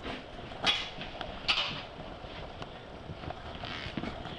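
Footsteps and the knocks and scrapes of a back door being opened and walked through, with two louder scuffing noises within the first two seconds.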